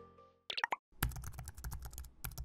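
Computer keyboard typing sound effect: a quick, even run of key clicks, about ten a second, starting about a second in. A short pop comes just before the typing begins.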